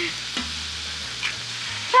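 Food sizzling steadily on a hot flat-top griddle, with a sharp tap about half a second in as an egg is cracked on the griddle.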